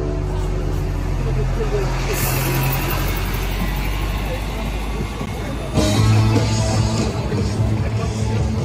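Busy street sounds, with music playing and voices. The engine of a London double-decker bus running close by gets suddenly louder about six seconds in.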